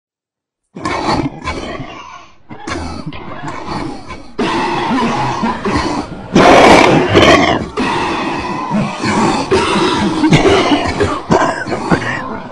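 A person's loud, irregular non-speech vocal noises, starting abruptly about a second in after silence.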